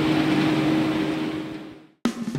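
Steady mechanical hum with a held low tone over outdoor background noise, fading out to silence near the end.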